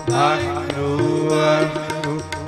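Sikh devotional kirtan: voices singing a hymn over steady held harmonium chords, with hand-drum strokes.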